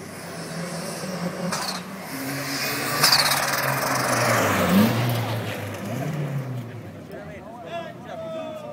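Renault 5 GT Turbo accelerating hard through the gears and driving past, its engine note stepping at a gear change and swelling to a peak midway before fading. Sharp cracks are heard at about one and a half and three seconds in.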